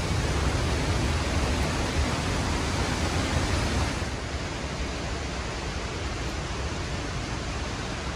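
Steady rush of a waterfall, a continuous noise of falling water that drops slightly in level about halfway through.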